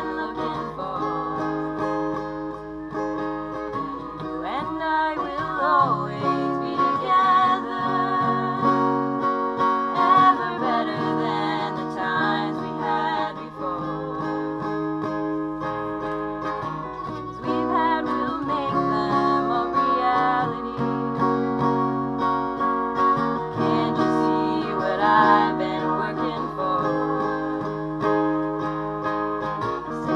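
A woman singing with an acoustic guitar accompanying her.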